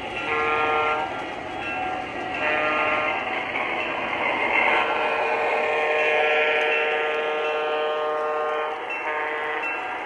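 Horn of an MTH Proto-Sound 2 Union Pacific gas turbine locomotive model sounding a series of blasts, the longest held about four seconds and followed by a short one, over the steady running sound of the model train as it approaches and passes.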